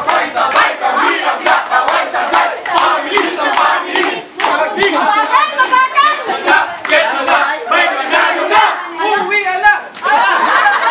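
Cheering squad of many voices chanting and yelling together, with frequent sharp clicks of claps or hand-held sticks.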